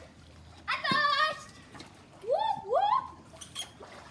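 A child shouting: one long high-pitched call about a second in, then two short calls rising in pitch near the middle, over faint water sloshing in a backyard swimming pool.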